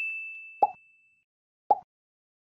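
Click-button sound effects of an animated subscribe screen. A single high chime-like ding is already fading out over the first second, and two short click-pops come about a second apart as the animated cursor presses the on-screen buttons.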